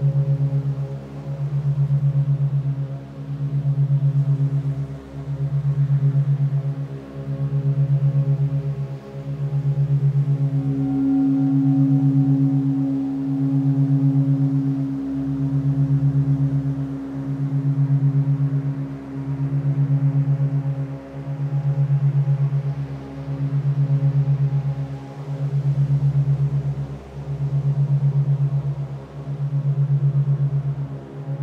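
Monaural-beat meditation drone: a low hum tuned to 136.1 Hz, pulsing at 8 beats a second and swelling and fading about every two seconds, under softer held higher tones. A brighter sustained tone comes in about ten seconds in and fades out around twenty seconds.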